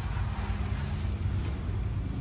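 A steady low rumbling noise with no clear strokes or voices in it.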